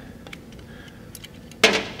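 A few faint, small metallic clicks as the valve locks (keepers) are picked out from a compressed valve spring retainer, followed near the end by the start of a spoken word.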